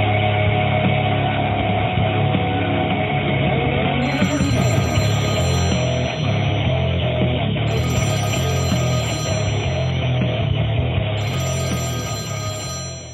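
Intro music with a telephone ringing over it three times, each ring about a second and a half long, the first about four seconds in.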